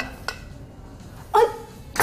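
A short startled exclamation, "Ai!", from a woman about a second and a half in; otherwise quiet room tone.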